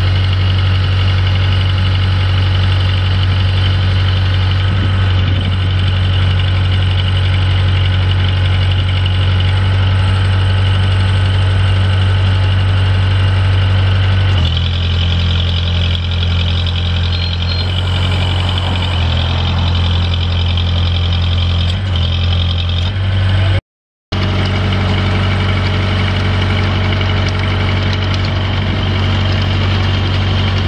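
Four-cylinder Kubota V1505 diesel engine of a ride-on trencher running steadily. Its note changes about halfway through, and the sound cuts out for a moment a little later before the engine carries on.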